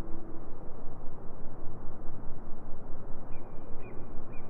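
Outdoor ambience picked up on a walk: a steady, rumbling noise, with a few short, high bird chirps near the end.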